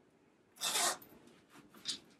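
Rustling of a bomber jacket handled at its hem and zipper: two short rasps, the first longer and louder about half a second in, the second shorter and higher near the end.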